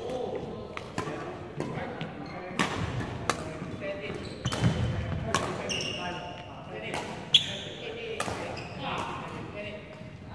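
Badminton rally: sharp racket strikes on the shuttlecock, the loudest a little past the seven-second mark, with players' shoes squeaking and feet thudding on the wooden court. Voices carry through the large hall behind it.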